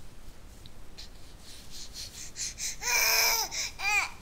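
Baby vocalizing: two short, pitched calls, the first about half a second long nearly three seconds in, the second brief at the very end. Faint rustling and taps come before them.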